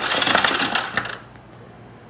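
Electric starter of a Yamaha Raptor 350 cranking its single-cylinder engine over with a fast, even clatter for about a second, then stopping. The push-button start now turns the engine over.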